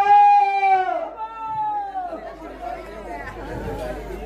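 A man's voice through a stage microphone holding a long, drawn-out sung note for about a second, then a second, shorter one that falls away into quieter, broken vocal sounds.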